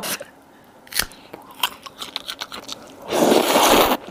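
Eating sounds: a sharp crunch about a second in and a few faint mouth clicks, then, near the end, a loud slurp of a mouthful of luosifen rice noodles lasting about a second.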